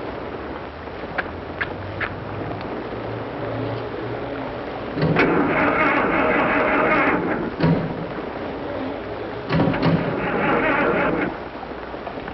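A boat engine being cranked over by its starter without catching, in two tries: one of about two and a half seconds starting about five seconds in, and a shorter one near the end. It will not fire. A few sharp clicks come in the first two seconds.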